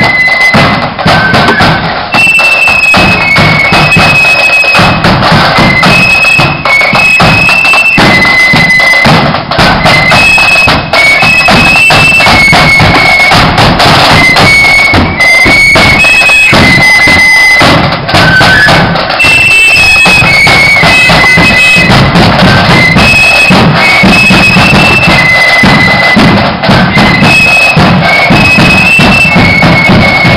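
Marching flute band playing a tune: high flutes carry a melody of quick, distinct notes over a steady beat of drums. Loud and close.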